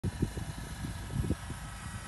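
Wind buffeting the microphone outdoors: an irregular low rumble with uneven gusts.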